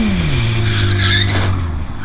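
Motorcycle engine falling in pitch as the throttle is rolled off, then holding a low steady note that stops near the end. A brief high tyre squeal comes about a second in.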